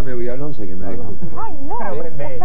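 Speech only: a man talking in a studio conversation, his voice rising and falling in pitch.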